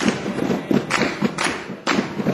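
A group of seated performers slapping and clapping their hands in a quick steady rhythm, about four dull thumps a second with a few sharper claps among them.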